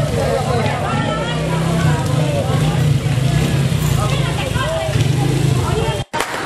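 Many people's voices overlapping at once, none of them clear words, over a steady low hum.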